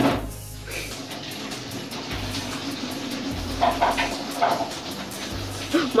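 Background music with a few changing low notes over a steady, noisy rush of water from someone bathing.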